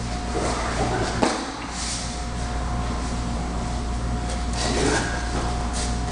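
A roundhouse kick: one sharp impact about a second in, over a steady hum of room noise.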